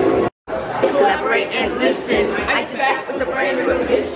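Indistinct chatter of several voices talking at once; the sound cuts out completely for a split second near the start, at an edit.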